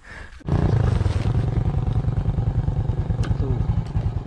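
Motorcycle engine running with an even, steady beat, cutting in abruptly about half a second in.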